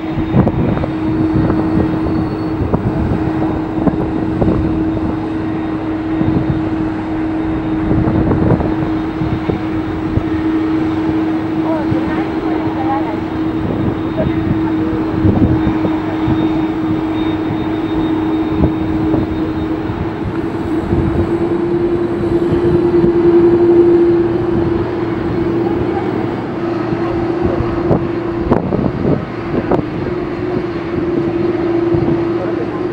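Airbus A330-200 jet airliner taxiing at idle: a steady jet engine hum with one droning tone, growing louder a little past two-thirds of the way through.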